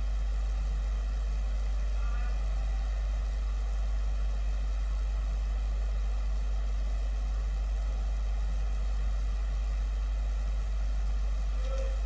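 A steady low hum with no speech over it, even in level throughout.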